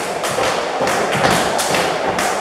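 Jump ropes skipping: rope slaps on the floor and feet landing on a rubber mat in a quick, regular rhythm of about three to four hits a second.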